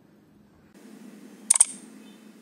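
A faint hiss, then a sharp double click about one and a half seconds in: a mouse-click sound effect from an animated subscribe-button end screen.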